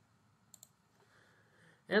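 Two faint, quick clicks about a tenth of a second apart, in a pause between spoken words.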